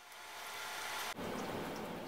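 Faint crackling rustle of hands handling a coiled flat stereo audio cable.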